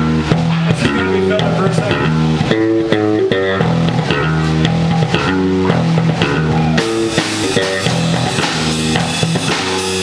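Live rock band playing with no singing: electric guitar lines over bass guitar and drum kit, the drums and cymbals growing brighter about seven seconds in.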